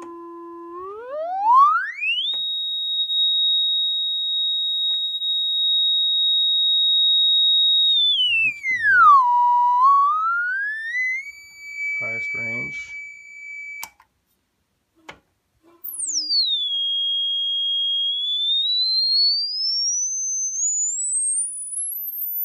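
1943 HP 200A audio oscillator's sine tone played through a loudspeaker, swept by hand across its frequency dial. It climbs from a low hum to a high whistle and holds, dips and rises again to a middling whistle, cuts out for about two seconds, then comes back falling from very high and climbs in small steps to a very high pitch near the end.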